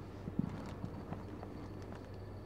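A steady electrical hum with a few scattered light knocks and clicks, the loudest about half a second in.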